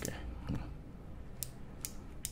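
A few sharp plastic clicks as the removed side plate of a baitcasting reel, with its magnetic brake dial, is handled and turned over, two of them about a second and a half in and just before the end.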